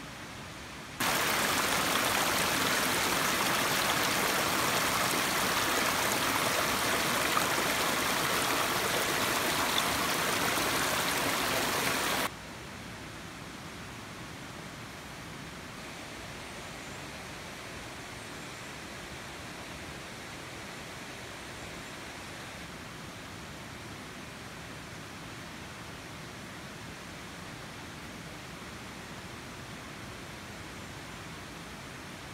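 Fast-flowing stream rushing over rocks, loud and steady, starting about a second in and cutting off suddenly after about eleven seconds. After it comes a quieter, steady rush of the river in the background, running loud after heavy rain.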